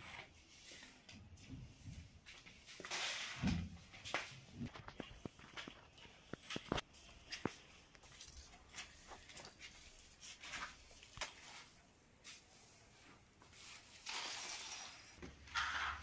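Scattered light taps and scuffs of slippered footsteps on a stone tile floor, with a couple of brief rustles.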